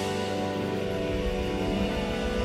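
Live funk band holding a sustained chord on guitars and keyboards, a cymbal crash ringing out over it just after the drum beat stops.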